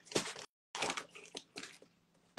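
Handling noise from a phone being picked up and repositioned: several short rustles and scrapes rubbing on its microphone.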